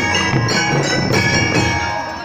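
School marching band playing: a ringing, bell-toned melody, typical of the bell lyres of a Filipino drum and lyre corps, over drumbeats.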